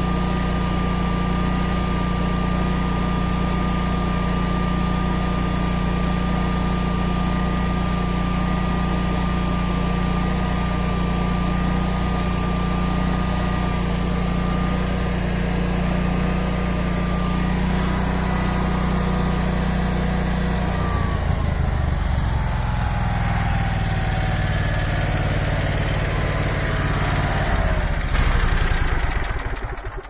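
Generator running steadily under an electric motor's whine while the fold-over tower is tilted up. About two-thirds of the way through, the whine slides downward in pitch as the load changes, and everything stops just before the end as the tower reaches vertical.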